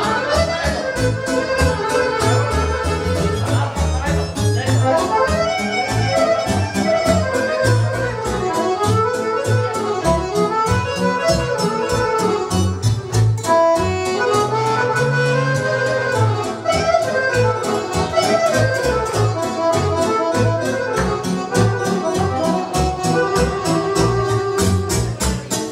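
Dallapé piano accordion playing a lively dance tune with fast melodic runs over a steady, quick beat.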